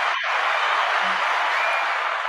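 Steady applause from a crowd, played in answer to a call for a round of applause.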